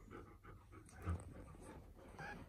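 Dog panting faintly, soft quick breaths repeating a few times a second, with a low bump about halfway through.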